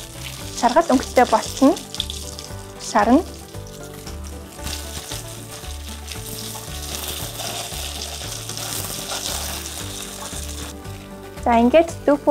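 Tofu pieces sizzling as they fry in a pan, the sizzle clearest and steadiest from about four to ten seconds in.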